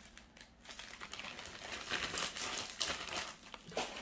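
Crinkling and rustling of packaging being handled, made of many small crackles. It starts about a second in and stops just before the end.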